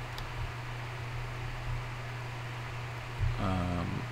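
Steady hiss with a low, even hum: the background noise of a home voice recording, with a tiny click just after the start. A man's voice starts again near the end.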